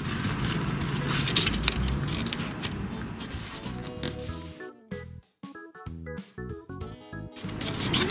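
Thin patterned cardboard being folded and creased by hand, rubbed and pressed flat against a table with rustling and scraping. About halfway, background music with short, stepping notes takes over.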